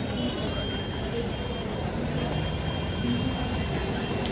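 Steady traffic noise of a busy city street, with a thin high tone held for a second or so at a time, and faint voices.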